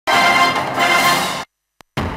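Television news theme music with held chords, cutting off abruptly about one and a half seconds in and leaving a short silence.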